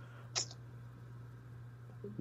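A quiet pause in a spoken conversation: a steady low background hum, with one brief faint click or breath about half a second in.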